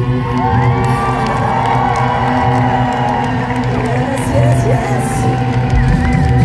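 Live indie rock band's music holding steady, sustained tones while the audience cheers and whoops over it.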